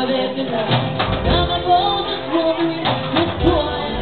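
Live piano-bar music: voices singing over piano with drums keeping the beat.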